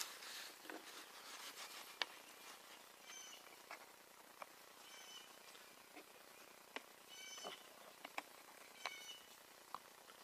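Near silence: a faint outdoor background with a few short, faint high chirps and scattered light clicks.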